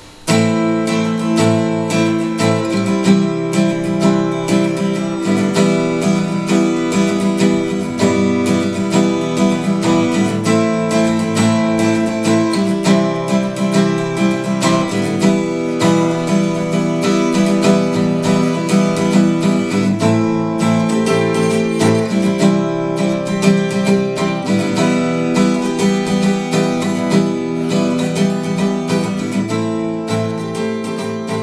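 A Chernihiv-made acoustic guitar played solo, strummed and picked chords in a steady rhythm with changing harmonies.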